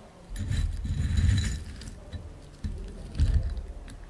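Handling noise as white crystals are dropped into a small glass bottle and the bottle is worked in the hands: a scraping rustle with a faint ring of glass. It comes in two spells, a longer one starting just after the start and a short one about three seconds in.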